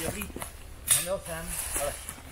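A man's voice speaking briefly, preceded about a second in by a short, sharp knock or rustle, the loudest sound, as a log pole is handled.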